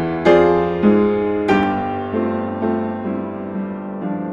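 Acoustic upright piano playing a slow, gentle hymn arrangement: full chords struck just after the start, a little before a second in and again near one and a half seconds, then softer notes that slowly die away.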